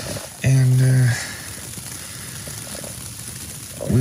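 A man's brief held voiced sound about half a second in, then a steady fine crackling patter of falling snow and rain on the tent fly.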